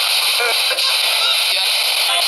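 Midland emergency weather radio being tuned up the FM band: steady static hiss with brief snatches of station speech and music as it passes stations.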